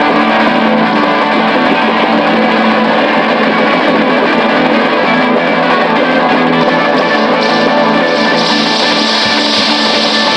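Live rock band playing an instrumental passage led by a double-neck Telecaster-style electric guitar, loud and steady. A brighter, hissier top end comes in about eight seconds in.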